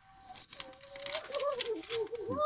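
A woman giggling: a high, wavering, breathy giggle in quick pulses.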